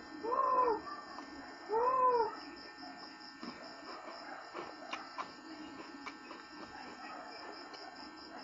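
Feral pigeons cooing: two short calls, each rising and then falling in pitch, about a second and a half apart, followed by faint open-air background with a few light clicks.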